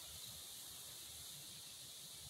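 Near silence: a faint steady hiss of background noise, with no distinct sound.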